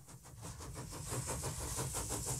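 Steam-machinery sound effect: a steady hiss over a rapid, even mechanical beat of about ten strokes a second, fading up from silence.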